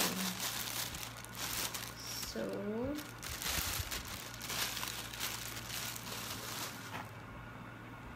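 Clear plastic bag crinkling and rustling in irregular bursts as a microphone shock mount with pop filter is pulled out of it.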